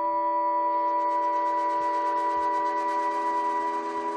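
Robotic acoustic instruments playing: a held drone of several steady tones, joined about half a second in by a fast, light ticking and rattling texture.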